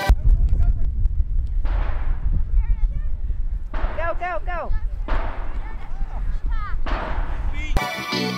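Heavy wind buffeting the microphone, with high-pitched shouts and calls from a girls' youth soccer game. There are a few short calls about two and a half seconds in, a louder cluster of calls around four seconds in, and more near the end.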